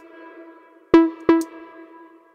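A single synthesizer note played through a dotted-eighth delay: the note, then one quieter repeat at the same pitch about a third of a second later, about a second in. Before it, an earlier held tone at the same pitch fades out.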